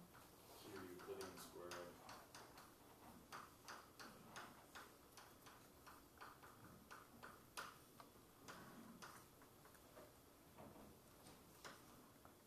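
Chalk writing on a blackboard: quiet, irregular clicks and taps of the chalk strokes. A faint low murmur of a voice comes in around one to two seconds in.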